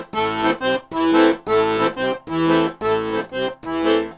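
Weltmeister button accordion playing a repeating rhythmic accompaniment figure on the left-hand bass and chord buttons, a longer chord followed by several short detached ones, over and over.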